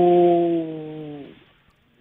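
A man's drawn-out hesitation vowel ('uhh') held at a steady pitch over a telephone line, trailing off about a second and a half in.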